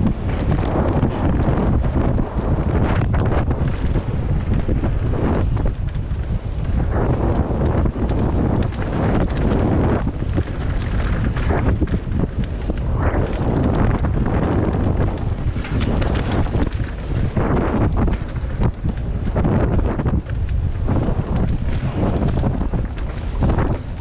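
Wind buffeting the microphone on a mountain bike riding fast down a dirt trail, with steady tyre rumble and frequent knocks and rattles from the bike over bumps.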